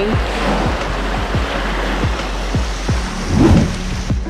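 Background music with a steady beat over an even rushing noise, which swells briefly near the end.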